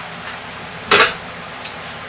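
A single sharp clatter about a second in, like a cooker lid being set down on a hard surface, with a brief ring after it, over steady low room noise.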